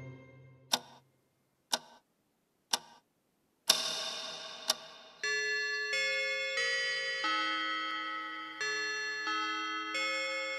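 Cartoon clock ticking once a second. About four seconds in a louder ringing strike sounds, and then a chime tune of held bell-like notes begins, the school bell marking lunchtime at noon.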